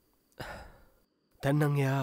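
A man's breathy sigh about half a second in, fading away, then a man's voice starts speaking near the end.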